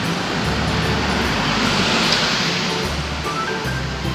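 Background music with a steady bass line over street traffic. A passing vehicle's rushing noise swells to its loudest about halfway through, then fades.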